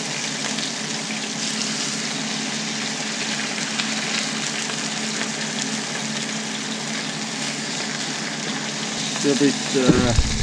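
Skin-on sockeye salmon fillets sizzling steadily in a hot frying pan as more fillets are laid in.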